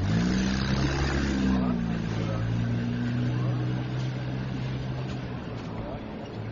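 A motor vehicle's engine going by in the street. It climbs in pitch at the start as it accelerates, then runs steadily until it fades out about five seconds in.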